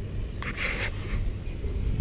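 Low, steady hum of a motor trawler's diesel engine running under way, with a brief hiss about half a second in.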